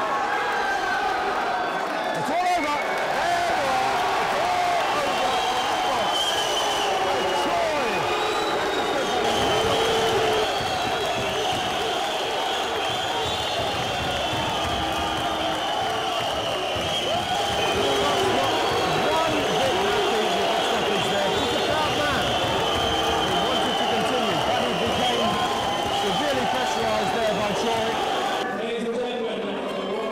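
Boxing crowd shouting and cheering, many voices at once in a continuous din.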